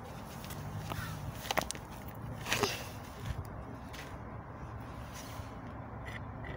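A steady low background rumble, broken by a few sharp clicks and taps scattered through.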